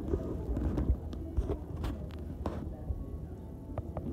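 Handling noise on a phone's microphone as the phone is jostled about: a series of knocks, clicks and rubs over a low rumble.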